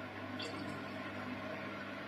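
Front-loading washing machine running with a wet load of laundry: a steady low electric hum over a faint wash of water and drum noise. A short high chirp sounds about half a second in.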